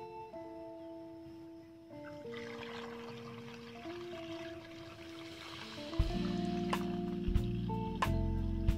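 Liquid pesticide mix poured from a bucket into a metal knapsack sprayer tank, a hissing pour from about two seconds in for a few seconds, under background music that gets much louder with a heavy beat about six seconds in.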